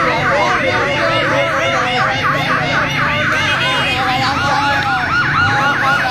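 A vehicle siren sounding a fast yelp, its pitch rising and falling about four times a second, the pattern growing less regular after about halfway.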